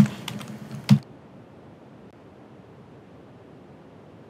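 Computer keyboard keystrokes: a few quick clicks in the first second, the last one the loudest, then a faint steady hiss of room tone.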